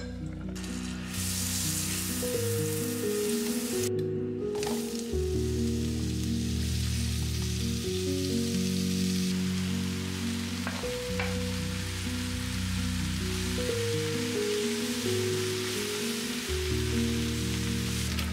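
Leeks and sliced potatoes sizzling in an oiled frying pan as they are stirred, a steady hiss with a short break about four seconds in. Slow background music with long low notes plays throughout.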